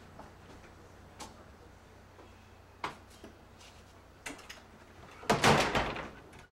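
A front door with a glass panel and iron grille being pushed shut, a loud clatter and rattle near the end, after a few faint clicks and knocks over a low room hum.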